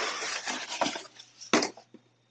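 Cardboard box lid being lifted open: a dry rustling scrape of cardboard sliding on cardboard that fades out after about a second, then a short knock about one and a half seconds in.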